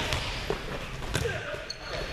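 Volleyballs being struck and bouncing on a hardwood gym floor: a few sharp smacks over players' chatter.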